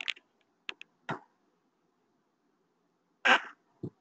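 A man's short throat noise about three seconds in, preceded by a few faint short clicks.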